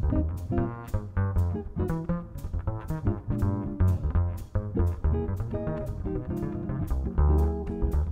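Jazz quartet playing bebop: hollow-body electric guitar, piano, upright bass plucked in a walking line, and drums keeping time with steady cymbal strikes.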